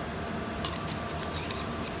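Small metallic ticks and light rubbing as the laser's lens is fitted back onto the galvanometer scan head, scattered from about half a second in over a steady faint hum.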